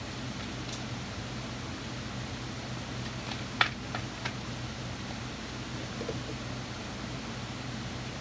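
Steady hum and air noise of an electric pedestal fan running, with a few light clicks about halfway through as tarot cards are handled.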